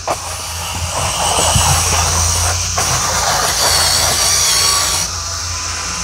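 Craftsman V20 cordless power scrubber running, its spinning bristle brush scrubbing vinyl siding: a steady motor hum under a hiss of bristles on the siding. The scrubbing noise drops about five seconds in while the motor keeps running.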